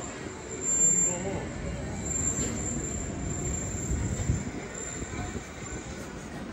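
Night street ambience in a pedestrian shopping street: passers-by talking briefly about a second in, over a steady urban background, with a low rumble swelling and fading about four seconds in.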